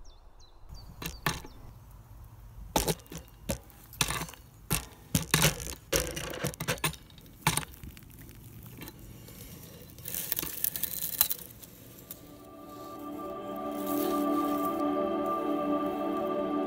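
Handling noise of a camera being rigged on a rope and lowered into a shaft: a string of irregular knocks, clicks and rubs, with a scratchy rustle about ten seconds in. Calm ambient music fades in after about twelve seconds and holds steady to the end.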